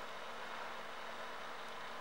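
Faint steady hiss of room tone with a low, even hum underneath.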